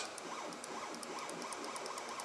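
X-Carve CNC's stepper motors jogging the spindle down in a quick string of small one-millimetre moves, each a short, faint whine that rises and falls, about three a second.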